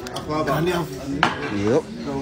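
Clinks of plates and cutlery at a meal table, with one sharp clink a little over a second in, under people's voices talking.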